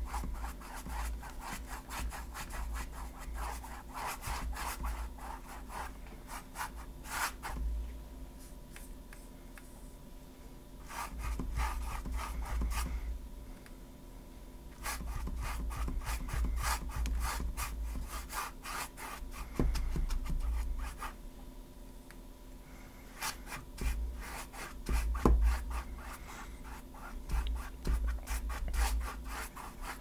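Stiff angular paintbrush scrubbing acrylic paint across a stretched canvas, the bristles rasping in runs of quick back-and-forth strokes with short pauses between them, as the meadow paint is smoothed and blended.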